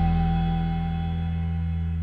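A band's held chord ringing out and slowly fading, with a deep bass note underneath and no new notes struck.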